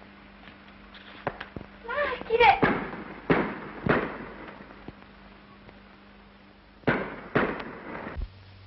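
A run of sharp bangs, each with a short ringing tail: three about two and a half to four seconds in and three more near the end, with a brief raised voice just before the first group.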